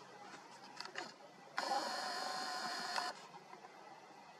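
A small electric motor whirring steadily for about a second and a half, starting and stopping abruptly. A few light clicks come just before it.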